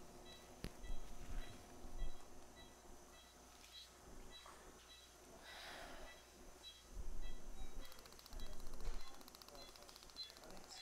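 Operating-room patient monitor beeping steadily, about one and a half beeps a second: the pulse tone following the patient's heartbeat. Low thumps, rustling and a faint buzz from the surgical team's handling are heard over it.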